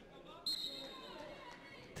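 Arena crowd noise with faint distant voices; about half a second in, a high steady whistle blast starts, loudest at first and then fading.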